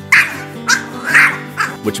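A Pomeranian barking: about four quick, sharp barks roughly half a second apart, over background music.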